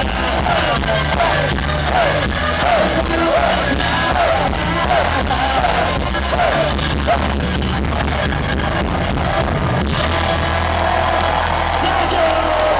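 Gypsy punk band playing loudly live: violin, accordion, acoustic guitar and drums over a steady bass, with shouted vocals.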